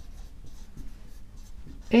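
Marker pen writing on a whiteboard: a run of faint, scratchy strokes as words are written out.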